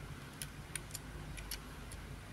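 Faint, irregular small clicks and ticks as fingers turn and handle a diecast model car, over a low steady hum.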